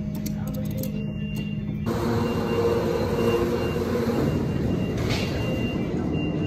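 Door close button clicked, then about two seconds in a modernized freight elevator's power-operated vertical bi-parting doors start closing. The door motor runs with a steady mechanical hum and a thin high warning tone.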